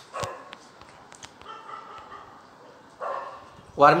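A dog barking a couple of times, with a short bark just after the start and another about three seconds in.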